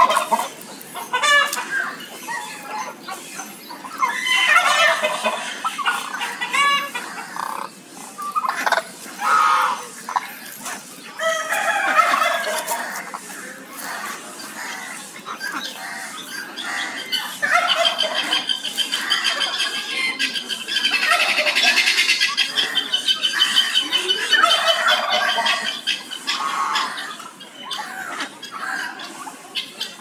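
A flock of domestic fowl calling, with repeated clucking and harsh squawks. In the second half one long, fast, rattling series of calls runs on for several seconds.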